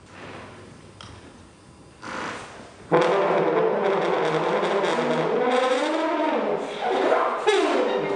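Trombone played in a free improvisation: after about three faint seconds it comes in loudly with a sustained tone, its pitch sliding up and down in the middle and gliding down near the end as the slide moves.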